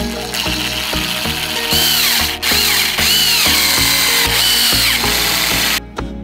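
Electric screwdriver running, its motor whine rising and falling as it drives small screws into a 3D-printed plastic chassis, louder from about two seconds in and stopping abruptly just before the end. Background music with a steady beat plays throughout.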